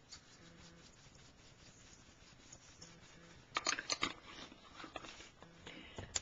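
Pepper being shaken out of its container onto cauliflower in a metal bowl: a quick cluster of sharp clicks and rattles about three and a half seconds in, then a few softer ticks, over faint room tone.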